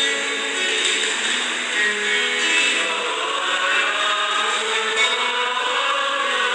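Church psalm music: steady held notes at several pitches with instrumental accompaniment, changing every second or so.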